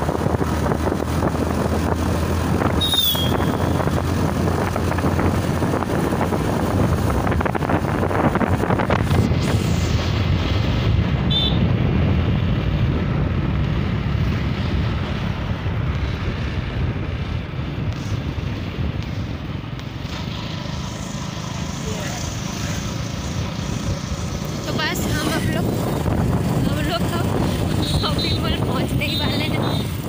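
Two-wheeler ridden along a road: steady engine and wind rush on the microphone, with other traffic passing.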